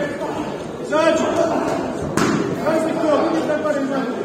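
Voices shouting and calling out in a large echoing hall during a kickboxing bout, with one sharp smack of a strike landing a little over two seconds in.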